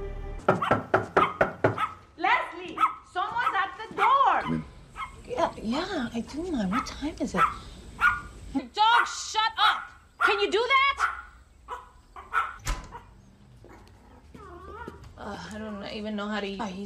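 A dog barking repeatedly, starting with a quick run of barks about half a second in and carrying on in bursts until about eleven seconds in, with voices mixed in.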